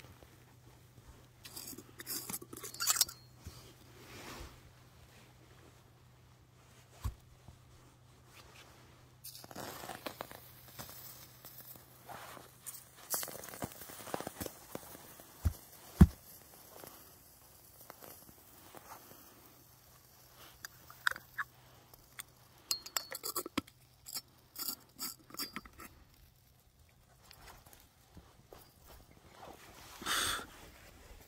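Burning grass and saltpeter-and-sugar residue crackling irregularly, with scattered crunches and a few sharp pops, one loud pop about halfway through.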